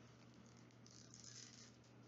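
Near silence: room tone, with a faint rustle of a paper-like wrapper being peeled off a capsule about a second in.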